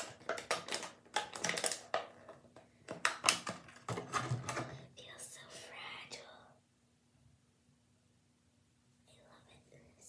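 Clear plastic packaging of a beauty blender sponge being handled: quick clicks and crackles through the first few seconds, then a short soft rustle.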